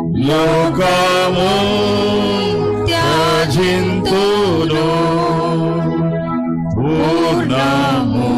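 A Telugu Christian hymn sung by a voice with instrumental accompaniment, the singer holding long, gliding notes over steady sustained chords.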